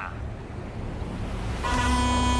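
A vuvuzela blown once as a starting signal: a single steady, buzzing horn note that begins near the end, over a low rumble.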